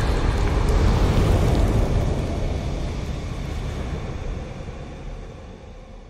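Deep, noisy rumble of a fire-themed animated logo intro's sound effect, fading away steadily.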